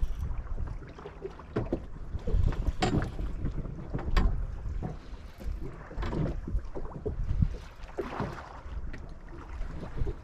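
Wind rumbling on the microphone over small waves lapping against a boat hull, with a few scattered knocks.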